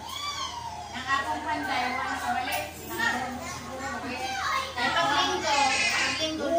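Overlapping chatter of several people, adults and children, with high children's voices gliding up and down.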